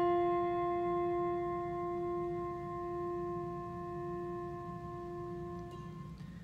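A brass singing bowl, struck once, rings on with a steady low tone and several higher overtones, fading slowly before it is cut off near the end. It is rung to mark the start of the prayer.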